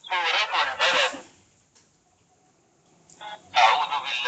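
A person's voice in two short stretches, about a second at the start and again near the end, with a pause between. It sounds thin, lacking the low tones, as if coming through a phone or radio speaker.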